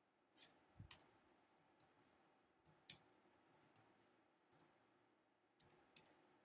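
Faint, irregular clicks from a computer's mouse and keys, about a dozen spread unevenly across a few seconds, over faint room tone.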